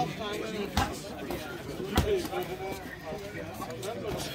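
Two punches from boxing gloves landing, sharp thuds about a second in and again at two seconds, over low crowd chatter.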